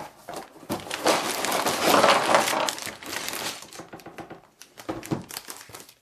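A LEGO set's cardboard box being opened and its plastic parts bags pulled out, crinkling. The crinkling is densest from about a second to three seconds in, then thins to scattered rustles and clicks.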